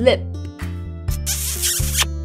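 Background music with a steady repeating beat, with a short noisy swish sound effect lasting under a second, about a second and a half in.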